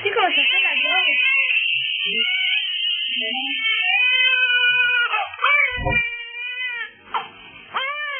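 Newborn baby crying in long, drawn-out wails, broken twice by short catches of breath.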